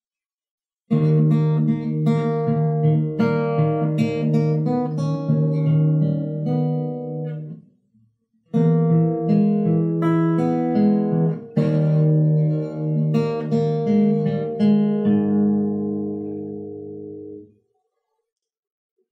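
Acoustic guitar played fingerstyle: picked chords with bass notes under a melody, in two phrases with a short break about eight seconds in, the last chord ringing out and fading near the end.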